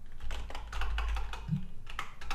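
Computer keyboard typing: a fast, continuous run of keystroke clicks as a command is typed into a terminal.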